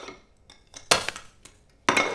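China crockery clinking: two sharp clinks about a second apart, with a fainter tap before them.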